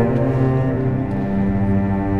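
Dramatic film score of low bowed strings, cello and double bass, playing slow sustained notes that step from one pitch to the next.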